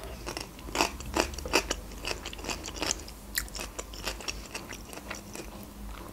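A person chewing a mouthful of stuffed bell pepper, with irregular short clicks and smacks of the mouth throughout.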